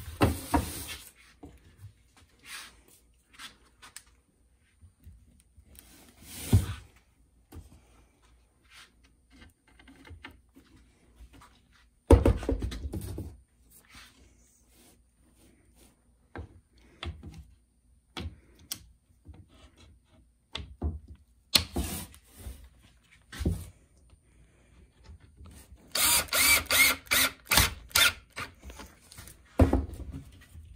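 Workshop handling of pine frame strips and a locking C-clamp on a workbench: scattered knocks, rubs and clicks, with a loud thump about twelve seconds in and a quick run of sharp clicks near the end.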